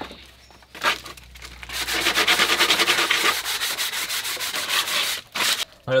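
Sandpaper rubbed by hand on the top of a wooden pallet-board stool: fast, even back-and-forth scratchy strokes, starting about a second in and stopping shortly before the end. A short burst of noise follows near the end.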